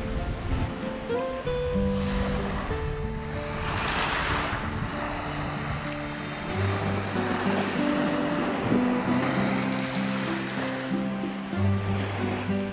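Background music of slow, held notes over small lake waves washing onto a pebbly shore, the surf swelling up about a third of the way in and again near the end.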